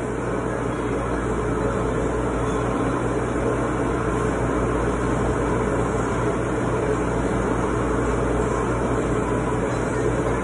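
Steady background din with a constant low hum and an even noise, with no distinct events.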